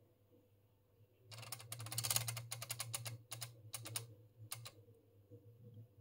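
Stepper motor and gear train of a 1970 Mettler TM15 temperature display turning its mechanical counter wheels. A fast run of clicks over a low motor hum lasts about two seconds, then a few separate clicks as the counter advances and settles.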